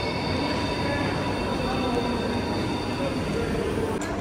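Steady rumbling din of a railway station's underground concourse, with a few faint steady high tones running above it.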